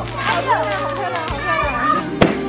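Several children shouting and squealing excitedly over one another.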